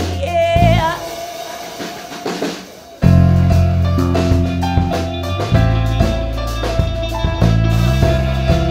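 Live improvisational art-pop band with drum kit, bass, electric guitar and keyboard. A held, wavering note fades in the first second and the band drops to a quiet, sparse passage, then comes back in loud with bass and drums about three seconds in, the guitar picking out notes over it.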